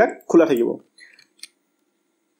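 A voice speaks a last word in the first second, then a few faint, short clicks follow.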